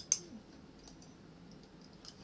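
A spoon clicking against tableware: two sharp clicks right at the start, then a few faint taps.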